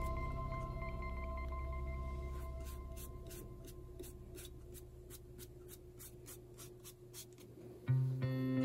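A soft toothbrush scrubbing the cap of a giant portobello mushroom to clean it: short scratchy strokes, about three or four a second, from a couple of seconds in until near the end. Calm music with long ringing tones fades away under it, and music comes back in right at the end.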